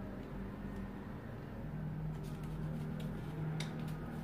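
A low, steady mechanical hum in the background, its pitch dropping a little about a second and a half in, with a few faint clicks of a pencil and tape measure handled on pattern paper.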